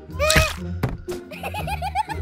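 Children's cartoon background music with added sound effects: a short swooping pitched sound near the start, a single thunk just under a second in, then a quick run of short bouncy blips, about six a second.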